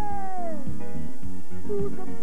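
Live band music: a singer holds a high note that slides downward over the first second, over band accompaniment with a steady beat.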